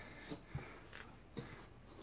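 Faint rustling of a mesh hockey jersey being handled and spread flat on a table, with a few soft bumps.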